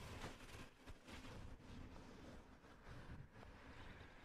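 Near silence: faint, even background noise with no distinct sound.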